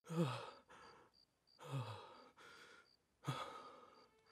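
A man sighing three times, each sigh falling in pitch and trailing off into breath.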